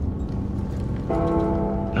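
Steady low drone of a transport plane's engines heard inside the cabin, joined about a second in by a held musical chord from the score.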